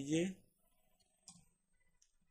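A man's voice finishing a word at the start, then faint clicks from computer keys as a command is typed, with one sharper click a little over a second in.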